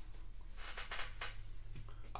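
Faint clicks and taps from cards or objects being handled on a desk, a few soft ones a little over halfway through, over a low steady electrical hum.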